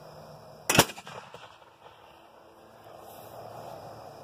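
M8 Multibang propane bird-scaring cannon firing once: a single loud bang a little under a second in.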